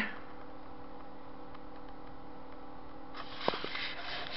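Room tone with a steady electrical hum. About three seconds in come rustling and a couple of clicks as the handheld camera is moved and turned around.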